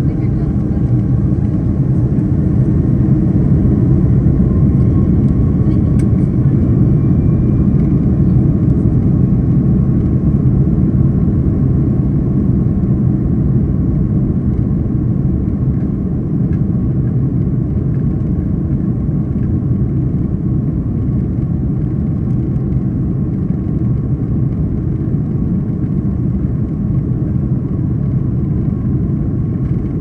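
Airbus A330-200's Rolls-Royce Trent 700 turbofan engines spooled up to takeoff thrust during the takeoff roll, heard inside the cabin over the wing. A loud, steady low rumble carries a faint whine that climbs slowly in pitch over the first several seconds and then holds.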